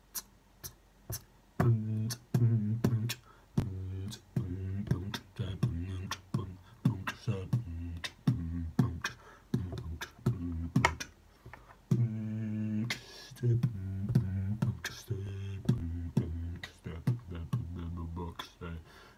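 Vocal beatboxing by one man. It opens with a few sharp closed hi-hat clicks as a count-in, then settles into a steady beat of low bass kicks and hi-hat clicks, with a longer hiss about two-thirds of the way through.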